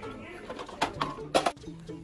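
A man's voice making low, hum-like murmurs without clear words.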